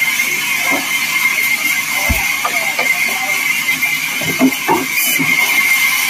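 Vertical bandsaw mill running steadily with a high whine, while sawn planks knock and clatter on the carriage table; a dull thump about two seconds in.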